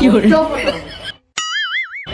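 A man's voice for about the first second, then a brief silence and a springy 'boing' sound effect whose pitch wobbles up and down about three times before it is cut off.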